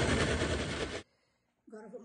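Countertop blender running on thick pão de queijo batter, then switched off about a second in, the motor noise cutting off suddenly.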